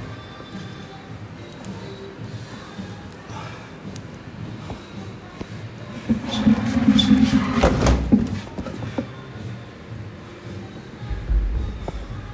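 Dumbbell reps on a rubber gym floor over background music. The loudest stretch builds about six seconds in and ends in a sharp thud as the dumbbell comes down, and a second, duller thud follows near the end.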